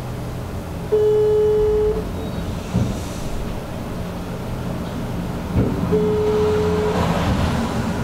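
Mobile phone ringback tone: two one-second beeps on a single steady pitch about five seconds apart, the line ringing while the call waits to be answered.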